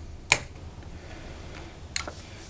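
A circuit breaker being switched back on to restore power to the unit: two sharp clicks, one about a third of a second in and another near the end, over a faint low hum.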